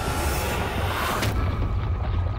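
A heavy explosion-like boom: a rush of noise that swells and cuts off sharply just over a second in, over a deep rumble that carries on, with music underneath.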